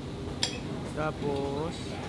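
A single sharp clink of tableware about half a second in, followed by a brief voice in the background.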